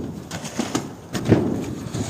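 Irregular scraping, crunching and knocking as snow and ice are cleared off a roll-roofed roof with shovels and scrapers.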